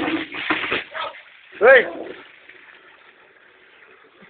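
Water pouring from a garden hose into a bucket, with a short loud call that rises and falls in pitch just under two seconds in.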